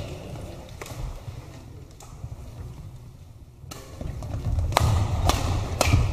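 Badminton rackets striking a shuttlecock as a doubles rally starts: a few sharp cracks about half a second apart near the end, with shoe and hall noise rising as play begins.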